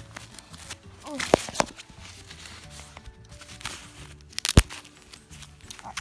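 Soft background music with a few sharp clicks and rustles as a doll's disposable diaper is handled and its tabs are pulled open; the loudest snap comes about four and a half seconds in.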